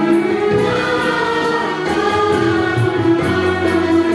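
A chorus singing a Hindi film song with instrumental accompaniment, played from a vinyl LP on a turntable.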